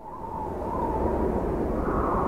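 Trailer-style sound effect: a deep rumble under a rushing hiss that swells up over about a second and then holds loud.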